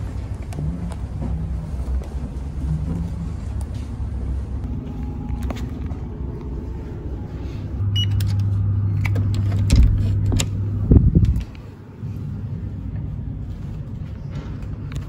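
Luggage trolley wheels rolling along a hotel corridor with a low, steady rumble. About halfway through, a short beep from the keycard door lock, then a few clicks and a thump as the door is unlocked and pushed open.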